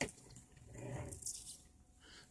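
A single sharp click, then soft sliding and rustling as a cardboard 2x2 coin holder is worked out of a plastic sleeve.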